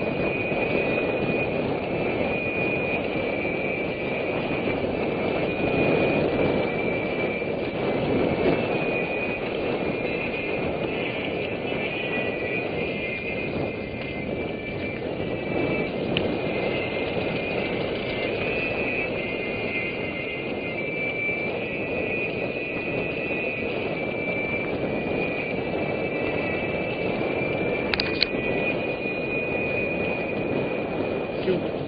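Steady rushing noise of a mountain bike ride: wind on the camera microphone and tyres rolling over dirt, with a wavering high whine from the bike. There is a sharp click near the end.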